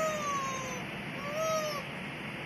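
Young baby fussing: a long, pitched cry that trails off, then a second short cry about one and a half seconds in, over a steady hiss.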